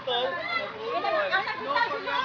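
Several voices, children's among them, calling and shouting over one another at play.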